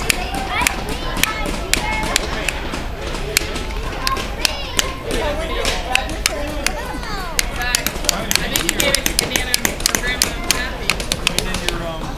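Claw hammer driving nails into a small pine wood kit, many irregular strikes, over the chatter of voices in a busy room.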